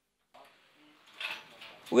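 Faint background ambience: a low steady hiss with a few soft, indistinct noises. It starts suddenly about a third of a second in, after a moment of silence.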